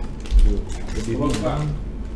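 Foil blind-box packet crinkling and tearing as it is pulled open by hand, a quick run of small crackling clicks, with a low thump about half a second in.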